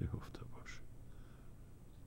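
A man's faint breath and murmur at a close microphone in a pause in his speech, over a low steady hum; the breathy sounds fade out about a second in.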